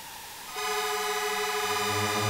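Electronic synthesized tones from a sound installation: several steady pitched tones held together like a chord, getting louder about half a second in, with a low tone entering near the end.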